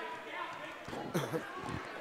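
A basketball being dribbled on a hardwood gym floor over a low hum of gym voices, with a short voice call about a second in.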